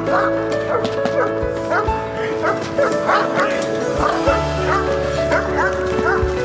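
A Caucasian shepherd dog (ovcharka) barks hard and repeatedly, about two or three barks a second, in guarding aggression at a decoy. Steady background music plays under the barks.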